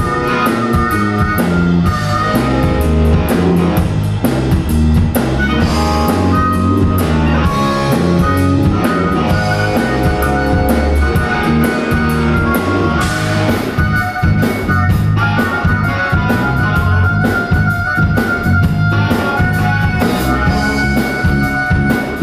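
Blues-rock band music: electric guitar over a drum kit keeping a steady beat.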